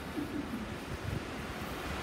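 Wind buffeting the microphone with a low, uneven rumble over a steady wash of ocean surf.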